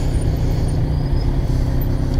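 Kawasaki Z900's inline-four engine, fitted with a Jeskap full exhaust, idling steadily at low revs as the bike rolls slowly.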